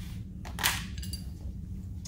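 A short scrape and metallic clink, about half a second in, as small metal mounting parts and tools are picked up, over a steady low hum.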